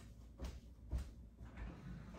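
Faint handling noise: two soft, low bumps, about half a second and a second in, over a low rumble.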